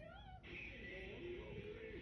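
Faint audio from a subtitled anime episode: a character's high voice, rising and falling in pitch, with background music under it.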